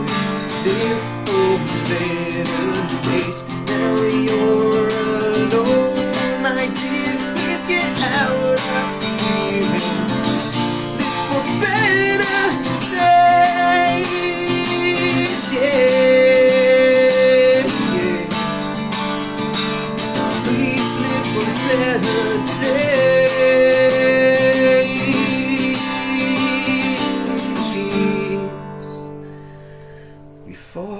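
A man singing long held notes over a strummed acoustic guitar. The song winds down and fades out near the end.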